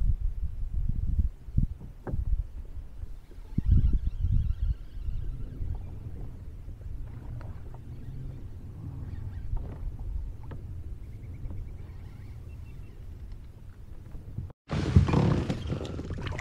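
Wind rumbling on the camera microphone over the water, with a few light clicks and knocks from handling the fishing gear in the kayak. Near the end, after a sudden break, louder water splashing as a hooked bass thrashes beside the kayak.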